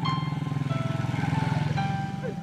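Small motorcycle riding past close by, its engine running steadily and dropping away near the end.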